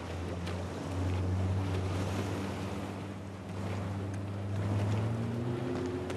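Motorboat engine running with a steady low hum that rises in pitch near the end, over wind noise on the microphone and a few faint clicks.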